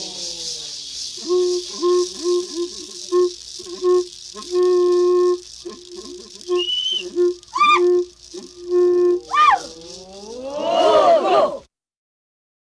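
Kayapó ritual chant: rattles shaken steadily while a line is chanted on one pitch in short and long notes, broken by a few high rising yelps. Near the end several voices rise and fall together, then the recording cuts off suddenly.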